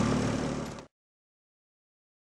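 Outboard motor of a coaching launch running steadily, fading out about a second in, then dead silence.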